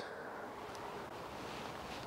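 Quiet outdoor background: a faint, even hiss with no distinct sounds.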